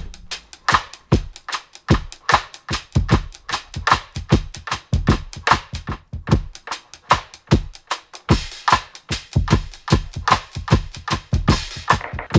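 A drum-kit beat of kick and snare hits played through a beat-synced delay plugin, its echo feedback and high-cut filter being swept live from a Korg KP3 Kaoss Pad touchpad, so the repeats and brightness of the drums shift as it plays.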